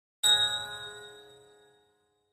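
A bell struck once, ringing with several clear tones and fading away over about a second and a half.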